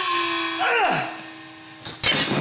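A sharp hit followed by a steady ringing tone that fades away over about two seconds, with a short falling vocal cry in the middle.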